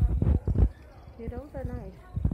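Low thumps and knocks from a handheld phone being jostled, loudest in the first half-second, followed about halfway through by a short voice in the background.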